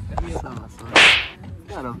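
A single loud, short swish-and-crack about a second in, like a whip-crack sound effect.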